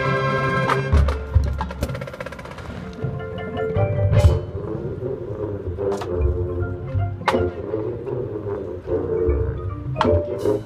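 Marching band playing: a loud sustained full-band chord for the first two seconds, then a quieter passage carried by the front ensemble's marimbas and other mallet percussion, punctuated by three sharp accent hits about four, six and seven seconds in.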